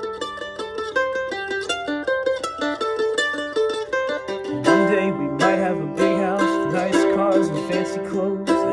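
Mandolin picking a fast single-note melody, then from about halfway playing fuller chords with a low wordless voice coming in alongside it.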